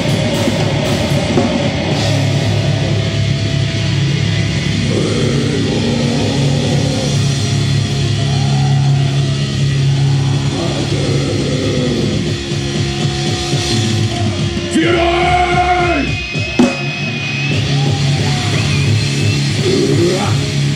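Black metal band playing live at full volume: distorted electric guitars, bass and drums.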